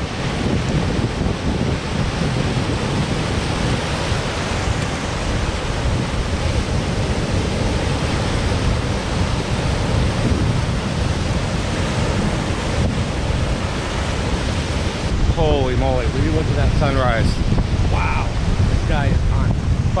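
Surf washing in over rocks and sand at the water's edge, a steady rush, with heavy wind buffeting on the microphone. A man's voice comes in near the end.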